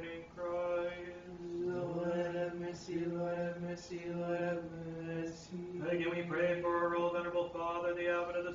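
Orthodox liturgical chant: voices chanting on a steady reciting pitch in short phrases with brief breaths between them, over a lower voice holding one note underneath.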